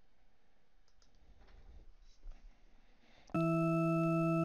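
A loud, steady electronic warning buzz, about a second long, starts near the end. It is the FARO arm software's end-stop warning, signalling that an arm joint has reached the limit of its rotation. Before it there are faint clicks.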